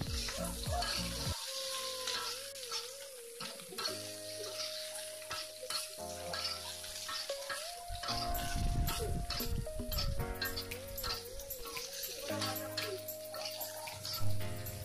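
Tofu and green chillies sizzling in a wok as a spatula stirs them, with short scraping knocks against the pan. Soft background music with long held notes plays throughout.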